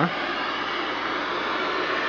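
Steady static hiss from the speaker of a 1969 Admiral solid-state black-and-white console TV, switched on with no station tuned in: the sound of no signal being received.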